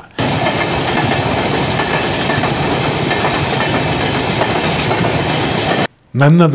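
A train running on the rails, a steady dense rumble and rattle that starts suddenly and cuts off suddenly about six seconds later.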